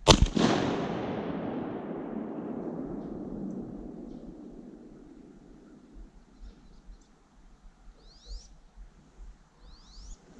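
A single shotgun shot, its report echoing and rolling away over about four seconds. Near the end, two faint, high, rising chirps.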